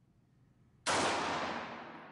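A single 9 mm pistol shot from a Smith & Wesson Model 915 fitted with a heavy 20 lb recoil spring, about a second in, ringing out and fading over about a second.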